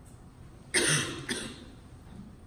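A person coughing twice, about three-quarters of a second in and again half a second later, the second cough weaker.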